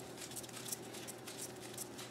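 Light, irregular metallic clicks and ticks of small parts being handled by hand at a bicycle's rear axle and derailleur, over a steady low hum.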